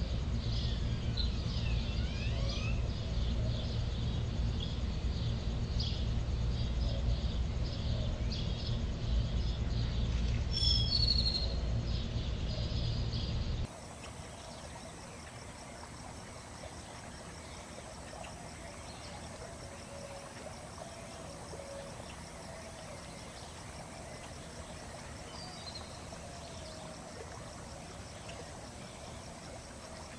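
Outdoor nature ambience of high chirping calls over a low rumble. About fourteen seconds in, the rumble stops abruptly and a quieter background with fainter chirps remains.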